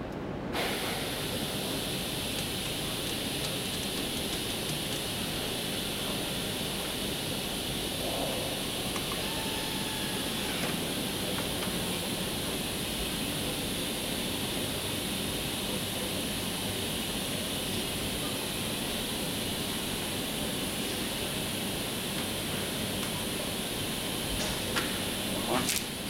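Steady, even air hiss of room ventilation and machine fans, starting abruptly about half a second in, with a few faint clicks near the end.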